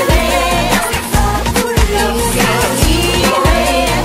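Spanish-language pop song with female voices singing over a steady, regular drum beat.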